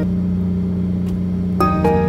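Steady low drone of a fishing boat's engine running. Background music comes back in about one and a half seconds in.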